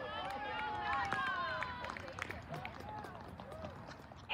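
Soccer players and spectators shouting and calling out on the field, several high young voices overlapping, with a few sharp clicks. The voices thin out toward the end.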